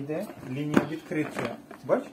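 People talking, with one sharp knock about three-quarters of a second in.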